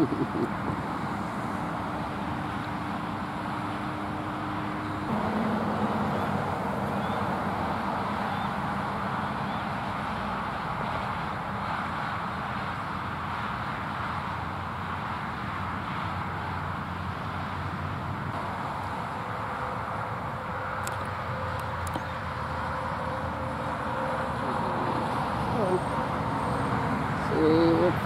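Steady outdoor traffic noise from passing road vehicles, swelling a little as cars go by.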